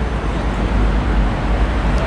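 Steady city street traffic noise, a continuous low rumble of road vehicles.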